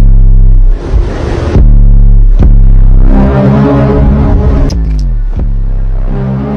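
A car engine revving over loud electronic music with heavy bass; the engine's pitch falls off about five seconds in.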